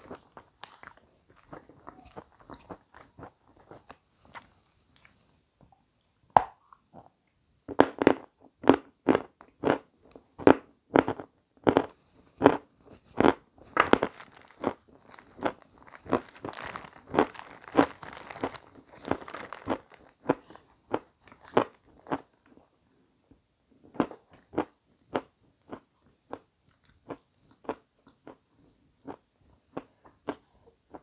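A person chewing a crunchy piece of cake close to the microphone: crisp crunches about twice a second, loudest through the middle stretch and softer near the end.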